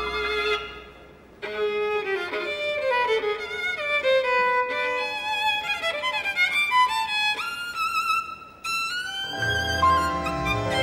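Solo violin playing a slow tango melody with vibrato, sliding between some notes, with a short break about a second in and another near the end. The orchestra's lower accompaniment comes back in just before the end.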